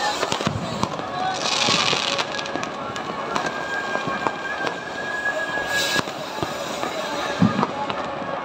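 Fireworks and firecrackers going off over and over, with many sharp bangs and cracks. A hissing burst comes about two seconds in, a thin steady whistle runs from then until about six seconds, and a heavier thump comes near the end.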